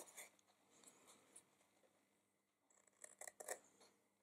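Small paper scissors faintly snipping through cardstock to bevel box flaps: a few quiet cuts at first, a near-silent pause, then a quick run of sharper snips near the end.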